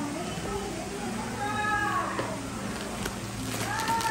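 A baby crying in another room, in rising-and-falling wails, the loudest just before the end. Plastic packaging crackles in a few short clicks near the end.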